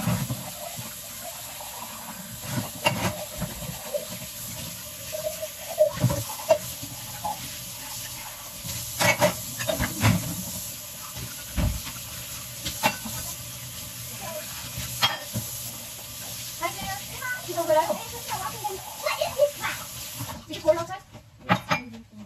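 Kitchen tap running into a stainless steel sink while dishes are rinsed, with intermittent clinks and knocks of crockery and cutlery. The water is turned off shortly before the end.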